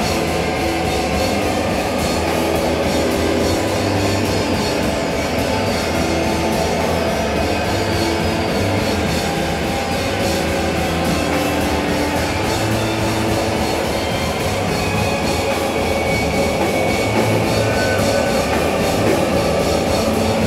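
Psychedelic rock band playing live at full volume: electric guitar, synthesizer and drum kit in a dense, unbroken wall of sound.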